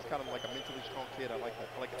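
Faint, distant-sounding voices of television football commentary playing low in the background, with a faint thin high tone during the first second or so.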